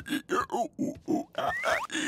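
Muffled, wordless mumbling from a cartoon dog character talking through a mask over his mouth: a quick run of short syllables, about four or five a second, with a short rising whistle-like glide near the end.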